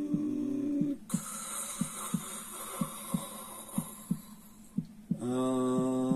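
Heartbeat sound, a double thump about once a second, under a chanted mantra: a held, humming note that stops about a second in, a long breathy hiss of yogic breathing, and the held note starting again near the end.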